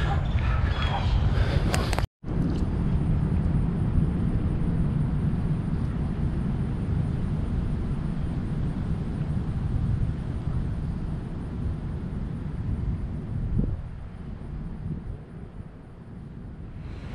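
Wind buffeting the microphone outdoors: a steady low rumble that cuts out briefly about two seconds in and eases off near the end.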